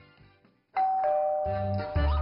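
A two-tone ding-dong doorbell chime, a higher note then a lower one, both ringing on, about a second in after the background music drops out. Background music with a beat comes back in under the chime.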